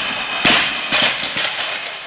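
A loaded barbell with bumper plates dropped onto a lifting platform: one loud thud about half a second in, then several smaller bounces and metallic clanks of the bar and plates that fade away.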